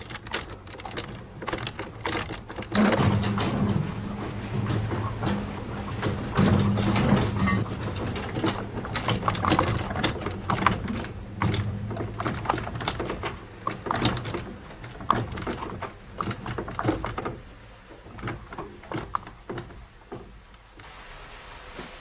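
Water-mill gearing turning: the great spur wheel's wooden beech cogs meshing with the iron stone nut, making an irregular clatter of clicks and knocks over a low hum through the middle, thinning to scattered clicks in the last few seconds.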